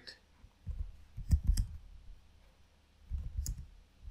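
Keystrokes on a computer keyboard in two short bursts of clicks, one about a second in and another near the end, as a command is typed.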